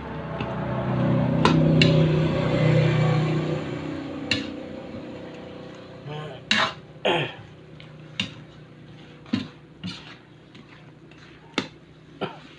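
A metal ladle stirring chicken pieces in sauce in an aluminium wok, scraping and knocking against the pan. There are several sharp clanks, spaced about a second apart in the second half.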